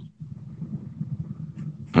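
A pause in conversation filled with a low, uneven background rumble, ending as a man says "yeah".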